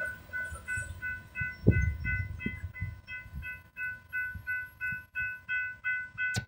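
Railroad grade crossing warning bell ringing steadily, about three strikes a second, over the low rumble of loaded hopper cars rolling past the crossing, with one heavier thump a little under two seconds in.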